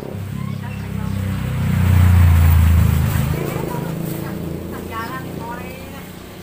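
A motor vehicle passing close by: its engine hum and road noise build to a peak about two seconds in and then fade away.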